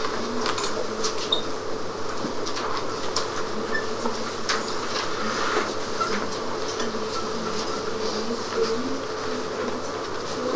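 Classroom room noise while students work on a written exercise: scattered small clicks and rustles over a steady low hum.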